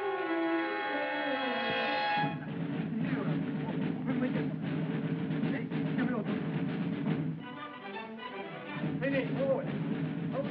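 Old film soundtrack: a long, held shout, then from about two seconds in a continuous din of many men yelling over music with drums.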